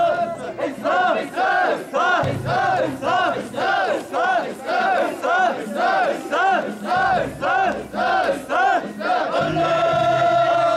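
Mikoshi bearers chanting in unison as they carry the portable shrine, a rhythmic group call about twice a second, each call rising and falling in pitch.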